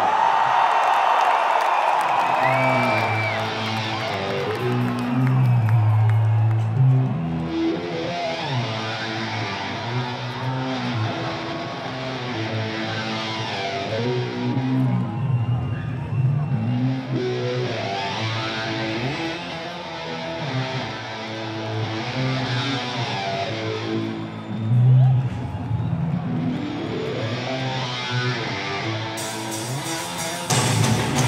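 Live heavy metal band opening a song in an arena: a repeating guitar figure that steps up and down, with the crowd cheering over the first few seconds. Near the end the full band comes in.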